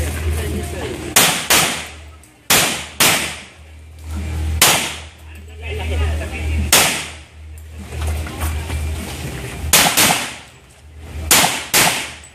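Handgun shots during a practical pistol stage: about ten sharp reports, mostly fired in quick pairs about a third of a second apart, with a couple of single shots in the middle.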